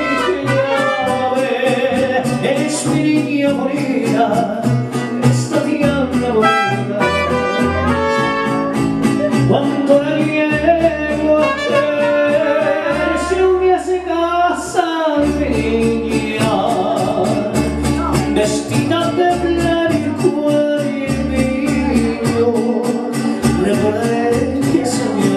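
Live mariachi band playing a song: trumpet over a steady rhythm accompaniment, with a male singer singing into a microphone.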